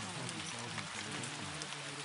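Steady rain sound, an even patter of drops, with faint overlapping spoken voices layered beneath it.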